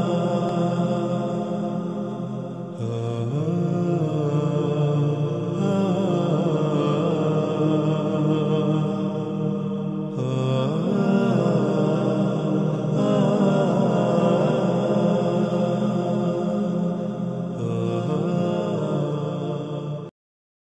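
Devotional background music: a sustained vocal chant with slowly gliding pitch over a steady low drone, shifting every few seconds, cut off abruptly at the end.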